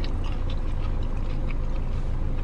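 A car engine idling, a steady low rumble heard from inside the cabin, with scattered small clicks from chewing and a plastic fork in the food.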